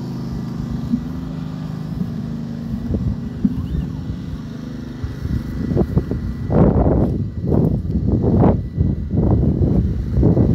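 A steady, low engine hum for about the first five seconds, then a man's voice begins speaking over it about six seconds in.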